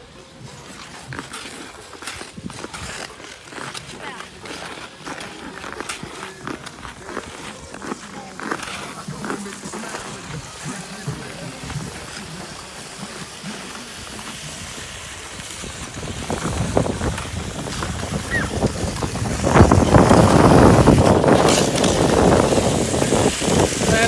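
Ice skate blades scraping and gliding over rough outdoor ice, with scattered clicks. The scraping grows much louder and denser in the last few seconds as it comes close.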